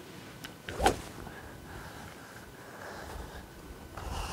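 A golf driver swung in a practice swing, cutting the air with one sharp swish about a second in.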